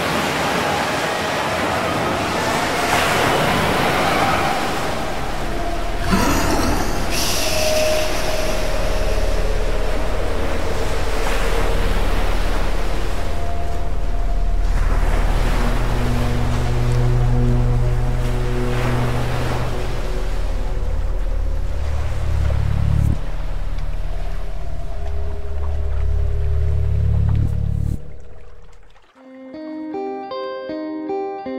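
Ocean surf washing and swelling under a low, droning film score of long held tones. Both fade out near the end, and plucked guitar notes begin.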